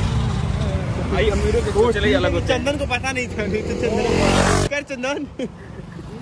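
Auto-rickshaw's small engine idling with a steady, pulsing rumble under voices. Just after four seconds a brief rising rush of noise comes in, then the rumble cuts off suddenly.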